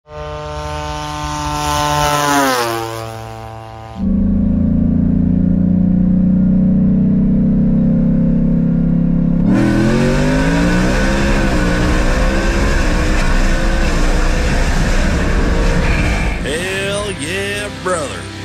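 Engine of a Whipple-supercharged Ford F-150 at hard throttle: the revs climb and then drop over the first few seconds, and a sudden jump about four seconds in starts a long steady stretch. The revs climb and waver again from about halfway through. Near the end, intro music takes over.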